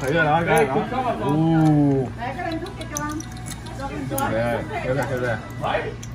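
People's voices talking throughout, with a few light clicks of snail shells and a fork on a plate.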